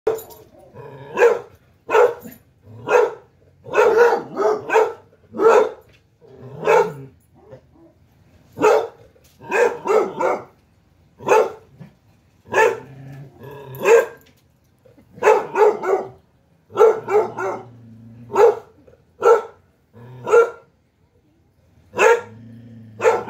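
Basset hound barking repeatedly in loud, deep single barks, often in quick runs of two or three with short pauses between, excited by a dog it sees on the TV.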